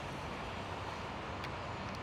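Steady outdoor background noise, an even low rumble and hiss with no distinct events apart from a faint click about a second and a half in.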